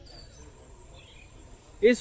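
A steady, high-pitched insect drone, one unbroken thin tone, over faint outdoor background; a voice starts speaking just before the end.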